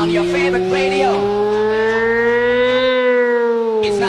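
Dance remix build-up: a siren-like synth tone with overtones glides slowly upward for about three seconds, then turns and falls, while the bass cuts out. Short vocal snippets sound in the first second or so.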